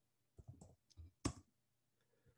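Several faint, short clicks of a computer being operated to advance a presentation slide; the loudest is a sharp click about a second and a quarter in.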